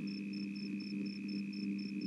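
Steady low hum of an old film soundtrack, with a faint high-pitched tone pulsing about four times a second.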